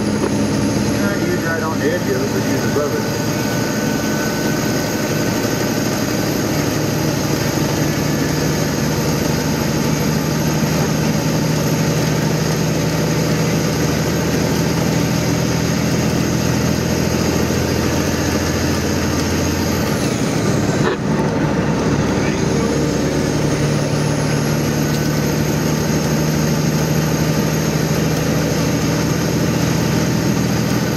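Vehicle engine and road noise heard from inside the cab at steady highway speed, with a high thin whine. About twenty seconds in, the engine note and the whine drop away briefly, then pick up and climb again.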